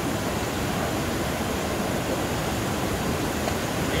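Steady rushing of a river's white-water rapids tumbling over boulders.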